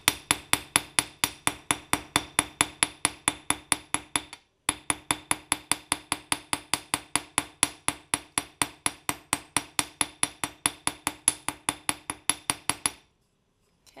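Ball end of a small hammer tapping wire on a metal bench block set on a rubber pad, about four taps a second, each with a short metallic ring. The wire is being flattened and given a hammered texture. There is a brief pause about four seconds in, and the tapping stops about a second before the end.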